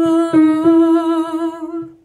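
A woman singing the song's last long held note with slight vibrato over plucked-string accompaniment chords, two of them struck early on; the note fades away just before the end.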